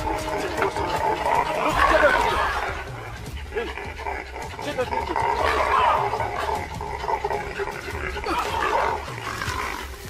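A monkey giving a run of short barking and screaming alarm calls as a leopard climbs toward it through the branches, over a steady low hum.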